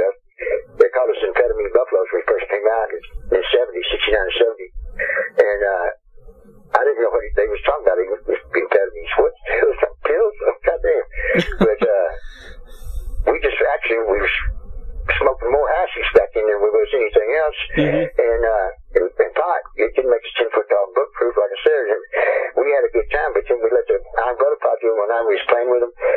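Only speech: a voice talking almost without a break, with a thin, telephone-like sound.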